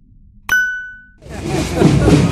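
A single bright bell ding, a subscribe-notification sound effect, about half a second in. It rings briefly and dies away. Near the end, a busy mix of voices and outdoor noise fades in.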